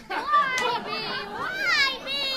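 Children's voices speaking on stage, high-pitched, with a rising, swooping exclamation near the end.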